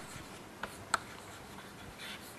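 Chalk writing on a blackboard: faint scratching, with two short sharp taps of the chalk about two-thirds of a second and one second in.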